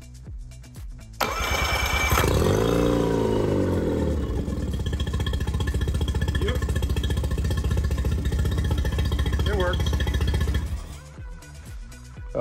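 Tohatsu 15hp two-cylinder four-stroke outboard, just fitted with a 20hp carburetor, starting about a second in. Its revs rise and fall back, then it runs steadily with an even beat until it cuts off near the end. The running note is one that its owners say sounds like a small V8.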